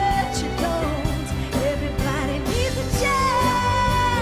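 A woman singing a pop song live over band accompaniment. About three seconds in, her voice settles into a long held note.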